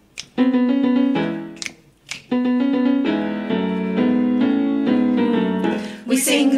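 Keyboard playing the piano introduction to a blues song: two held chords, each followed by a short break, then a steady run of changing chords, with a few sharp clicks between them.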